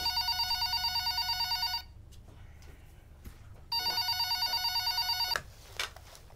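Telephone ringing with a fast electronic warble: two rings, each a little under two seconds long, with a pause of about two seconds between them.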